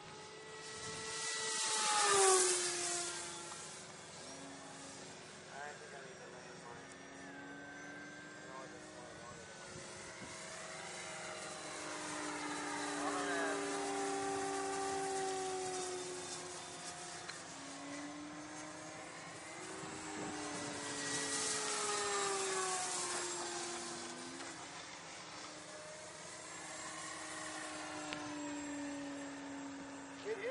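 ParkZone electric radio-controlled model airplanes flying overhead: several motor-and-propeller whines at different pitches, each rising and falling as the planes pass. The loudest pass swells about two seconds in, and another comes around twenty-two seconds.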